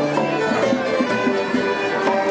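A walking street band plays a folk-style tune on fiddle, accordion, guitar and saxophone, with a steady beat about twice a second.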